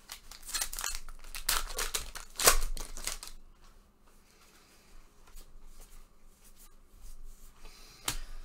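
Trading card pack wrapper being torn open and crinkled, a quick run of sharp rips and crinkles over the first three seconds or so, then only faint handling of the cards.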